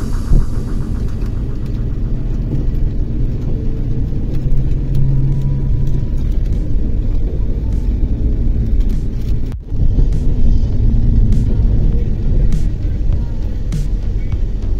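Steady low rumble and road noise of a moving vehicle heard from on board, cutting out briefly a little over nine seconds in.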